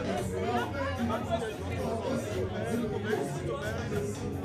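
Several people chattering at once, voices overlapping, with party music lower underneath.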